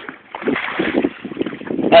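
Irregular rumbling noise aboard a small fishing boat, wind and sea against the microphone, getting louder about half a second in.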